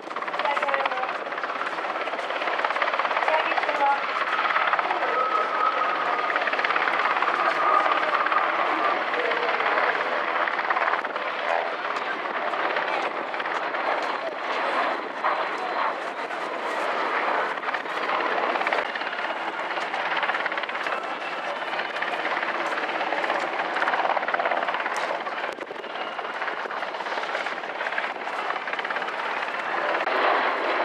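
UH-60J rescue helicopter hovering, with its rotors and turbines making a loud, steady noise throughout.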